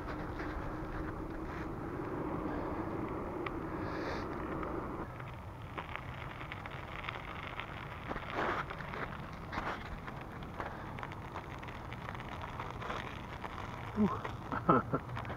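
Bicycle tyres rolling along an ice-glazed, frosted paved path. A steady rolling hum fills the first five seconds, then the sound turns rougher, with scattered irregular clicks from the tyres on the icy crust.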